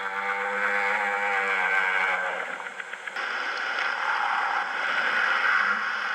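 Recorded humpback whale song. A long, steady moan holds one pitch for about two seconds, then gives way to a higher, rougher call for the rest.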